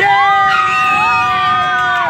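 Riders on a fairground ride screaming together, several voices in long held cries that overlap and slide in pitch.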